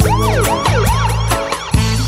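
DJ siren effect in a reggae mix: a quick run of repeated falling wails through the first second and a half, over the mix's reggae bass line and drum beat.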